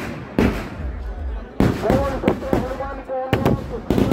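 Firecrackers packed into a burning Ravana effigy going off in a string of sharp bangs at uneven intervals, some in quick pairs.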